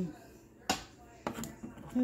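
Three sharp knocks of things being handled and set down on a kitchen counter: the first and loudest under a second in, then two lighter ones about half a second apart.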